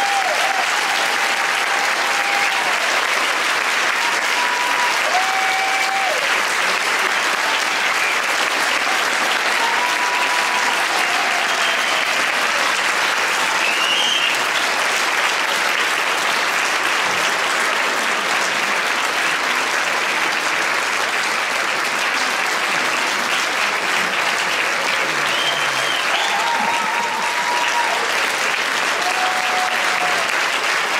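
Audience applauding, a dense steady clapping that keeps up without a break.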